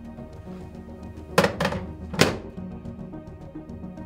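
Microwave oven door swung shut: a double clunk of the door and latch about a second and a half in, then another knock just after two seconds. The door latches normally.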